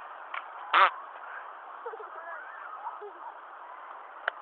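A young child's short, high vocal cry just under a second in, over a steady background hiss, with faint wavering voice sounds after it.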